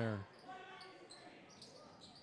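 Faint sound of a basketball game in a hardwood-floored gym: the ball being dribbled on the court, with distant voices. The end of a commentator's word comes just at the start.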